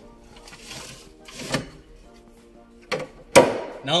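Solid-wood extending dining table being pushed closed: sliding wood-on-wood rubs in the first half, then two sharp knocks about three seconds in, the second the loudest, as the sections come together.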